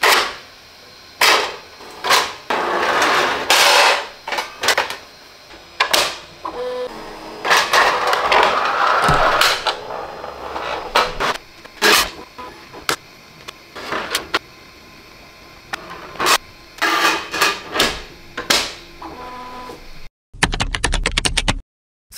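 Bambu Lab A1 Mini 3D printer with a Swapmod automatic plate-swap kit running its plate-change cycle: the motors drive the bed and swap mechanism in long noisy stretches, with repeated sharp clacks and knocks as build plates are pushed off and pulled in from the tray. Near the end comes a short, rapid rattle that cuts off suddenly.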